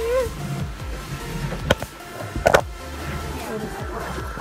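Bumping and rubbing of a handheld phone being moved about, with sharp knocks a little before halfway and, loudest, about two and a half seconds in, over background music.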